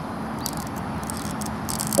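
Plastic action figure handled and its head turned, making a few faint clicks and a short rattle near the end, over steady outdoor background noise.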